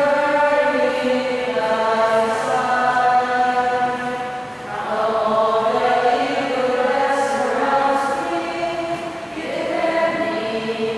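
A church choir singing a hymn in slow phrases of long held notes, with a short break about halfway through and another near the end. It is sung during the offertory, as the altar is being prepared.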